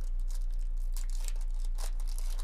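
Foil wrapper of a 2024 Topps baseball card pack being torn open and crinkled by hand, in a run of short crackling rips, the loudest about a second in and just before the end. A steady low hum runs underneath.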